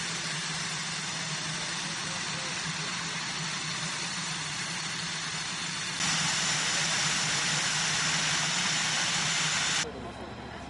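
Steady engine noise with a strong high hiss from an aircraft tow tractor pulling an F-5E Tiger II fighter. About six seconds in, the sound turns suddenly louder and brighter.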